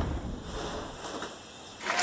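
Low wind rumble on the microphone. Near the end a loud, steady hiss-like noise with a held tone cuts in abruptly.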